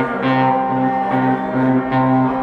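MGB Guitars bowling pin guitar played in an instrumental break of a blues song: a repeating bass figure, a low note alternating with a higher one about two to three times a second, with higher notes ringing over it.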